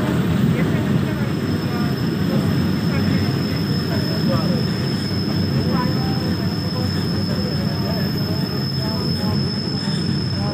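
Passenger train running steadily along the track: an unbroken low rumble of wheels and carriage, with a faint steady high whine above it.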